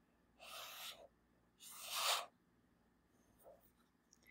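A new, stiff oracle card deck being shuffled by hand: two brief brushing slides of cards against each other, the second louder, and a faint one near the end.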